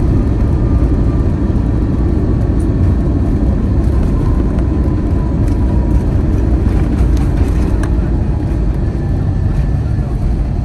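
Cabin noise of an Airbus A321-231 rolling along the runway after landing: a loud, steady low rumble from the wheels and IAE V2500 engines, with a faint engine whine slowly falling in pitch as the jet slows. A few light cabin rattles come about seven seconds in.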